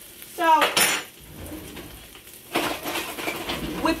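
Metal kitchen utensils and cookware clinking and rattling, mostly in the second half, as a ladle is fetched to scoop pasta cooking water.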